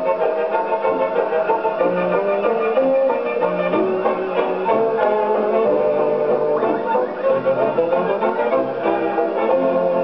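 Light orchestral dance music playing from a 78 rpm Columbia shellac record on a gramophone: a continuous melody of held notes, with a dull, treble-less old-record sound.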